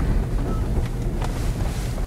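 Steady low rumble of a car's engine and tyres heard from inside the cabin while driving slowly.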